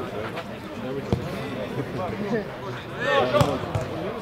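A football being kicked: a sharp thud about a second in and more thuds near the end, under spectators talking and calling out, with louder shouts near the end.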